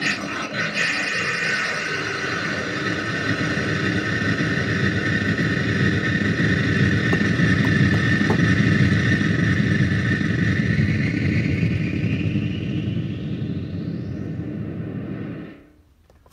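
Loud, continuous electronic drone of noise and ringing feedback from a circuit-bent telephone's effects chain (voice changer, spring reverb and PT2399 delay). Near the end a pitch sweeps upward, and then the sound cuts off suddenly.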